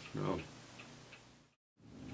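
A man says a short 'no', then a clock ticks faintly under quiet room tone. The sound cuts briefly to dead silence near the end at an edit.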